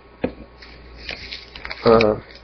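A pause in a man's talk over a low steady hum, with one sharp click about a quarter second in, then faint light rustles and ticks. His voice returns near the end.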